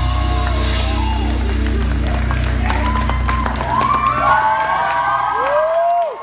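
Live band's final held chord ringing out and stopping about two-thirds of the way in, while the audience whoops, cheers and claps; the whoops and applause grow as the music stops.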